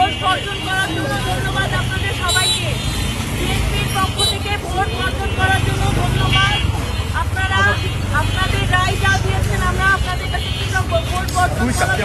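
Several people talking at once on a busy street over steady road-traffic noise with a low rumble.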